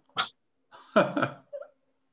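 A person laughing briefly over a video call, after a short breathy sound.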